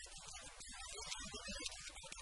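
A man speaking quietly in a small room, his voice low in level.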